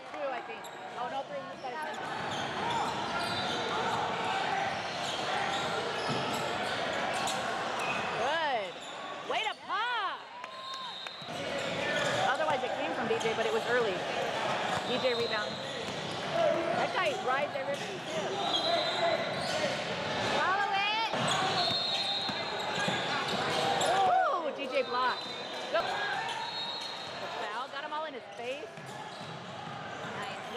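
Basketball dribbled on a hardwood court, with sneakers squeaking in many short rising and falling squeals and background voices from players and onlookers.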